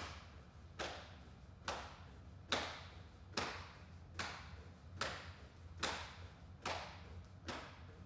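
A person doing jumping jacks on foam mats: a sharp slap or thud on each jump, in an even rhythm a little faster than one a second, over a steady low hum.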